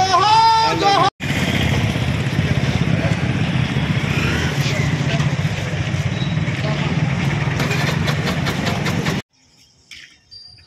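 Street traffic noise with motor scooters and other vehicles running close by. It starts abruptly about a second in, after a moment of men's voices, and cuts off suddenly near the end.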